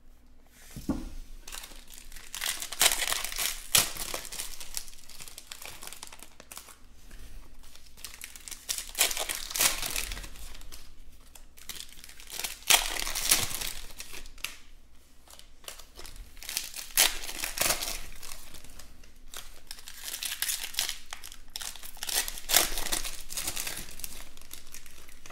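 Foil trading-card packs (2020 Panini Chronicles Baseball) being torn open and crumpled by hand, in repeated bouts of crinkling and ripping a few seconds apart.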